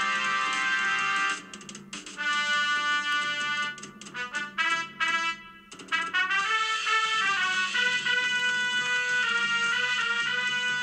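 Trumpet playing a slow melody in a jazz recording: a held note, then a stretch of short, clipped notes with gaps between them, then a smoother run of stepping notes.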